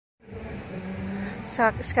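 Steady street traffic noise with a low continuous hum. A person starts talking near the end.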